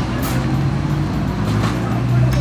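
Steady low rumble of a motor vehicle engine running.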